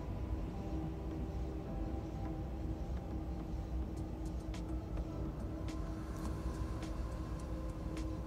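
Electric hair clipper running with a steady buzz as it is worked over a comb at the nape, tapering the neckline. A few light ticks come in the second half.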